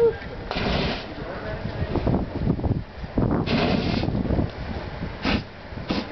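Fire breather spraying lamp oil through a torch flame, each spray going up as a fireball with a rushing burst of noise: three bursts, the first about half a second in, a longer one around three and a half seconds, and a short one near the end.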